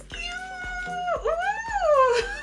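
A high-pitched excited squeal of delight in a voice: one held note, then a second that swoops up and back down.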